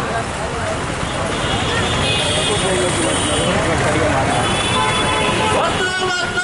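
Street noise of a marching procession: a mix of many people's voices and passing traffic, loud and steady, with no single voice standing out.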